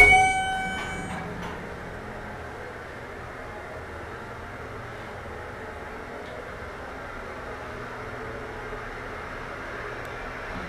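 A single chime rings and fades over about a second, then the Schindler hydraulic elevator cab runs downward with a steady, even ride hum.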